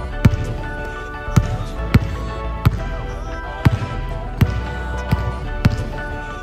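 Basketball dribbled on a hardwood gym floor: about eight sharp bounces at an uneven pace, over background music.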